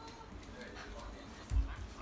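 A dull thud about one and a half seconds in, as a child lands a jump on the floor or mattress, with faint high children's voices around it.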